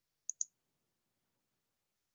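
Two quick clicks about a tenth of a second apart, just after the start, from the presenter's computer as the presentation slide is advanced; otherwise near silence.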